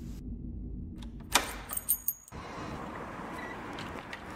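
A sudden loud whoosh-like hit about a second and a half in, followed by a brief burst of very high, glittering pulsed tones: a transition sound effect. It then gives way to a steady, even background noise.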